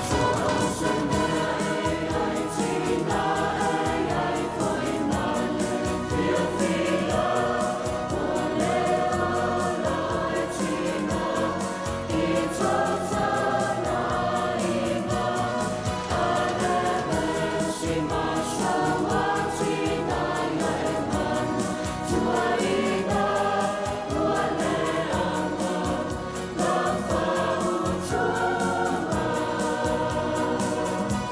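A large church choir of mixed voices singing a Samoan hymn together, in full voice and without a break.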